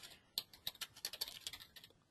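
Computer keyboard typing: a quick run of about fifteen light keystrokes, starting about a third of a second in.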